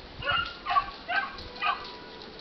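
A dog barking four times in quick succession, about two short barks a second.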